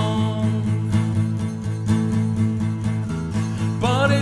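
Acoustic guitar strummed in a steady rhythm on a single chord, with singing coming back in near the end.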